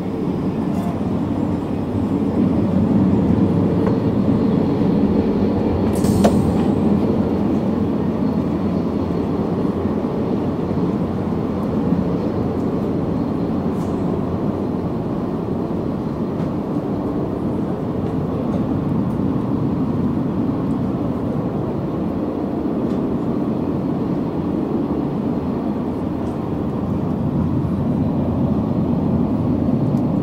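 Steady low rumble of the Al Boraq high-speed train running at speed, heard from inside its double-deck Alstom Euroduplex carriage. A brief knock sounds about six seconds in.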